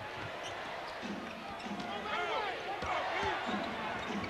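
Basketball being dribbled on a hardwood arena court, with repeated bounces over the steady noise of an arena crowd.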